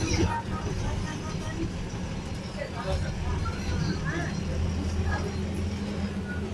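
Bus engine running as heard inside the cabin while the bus drives, a steady low hum that grows stronger about halfway through, with passengers' voices in the background.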